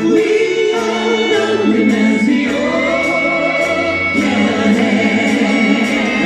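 Live pop band playing: several voices singing together with long held notes, over keyboards and a steady drum beat.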